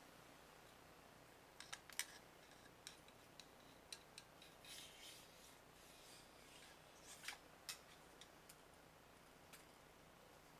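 Mostly near silence with faint scattered clicks and short scrapes from a steel cleaning rod and 22 caliber wire bore brush being worked through an AR-15 barrel. The clicks come in small clusters, about two seconds in and again around seven to eight seconds in.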